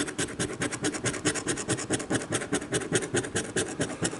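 A coin scratching the coating off a scratch-off lottery ticket in fast, even back-and-forth strokes, roughly ten a second.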